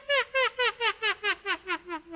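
A person laughing: a quick string of short 'ha' pulses, about four or five a second, falling steadily in pitch and fading away.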